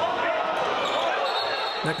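Live sound of a basketball game in an indoor gym: the crowd's many voices blend together with noise from the court.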